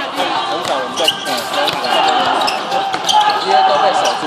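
A basketball being dribbled on an outdoor hard court, a run of repeated bounces, under the overlapping chatter of players and onlookers.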